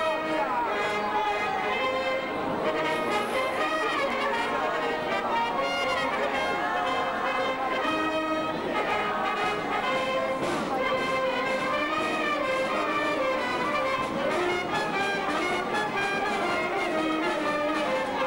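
Brass band playing processional music with long held notes, trumpets and trombones sounding together.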